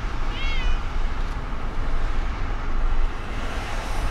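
Steady rumbling background noise, with one short high-pitched whine about half a second in that rises and then holds briefly.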